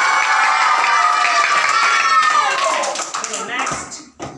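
A group of children shouting together in one long, held cry, with hand claps through it; the cry falls away shortly before the end.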